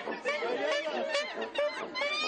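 Several voices chattering quickly, from costumed performers in a street theatre show.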